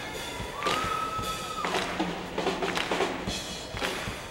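A drum kit played with sharp, irregular hits among other music, with one held high note from about half a second in until just under two seconds.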